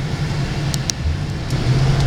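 A 2009 Ford Crown Victoria Police Interceptor's 4.6-litre V8 running with a steady low hum, heard from inside the cabin, with a few light clicks partway through.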